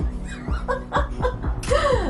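A woman chuckling and laughing over background music with a steady beat of about two a second.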